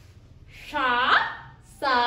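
A woman's voice saying single drawn-out syllables one at a time, one about half a second in and another starting near the end, as when reading out Malayalam letters one by one.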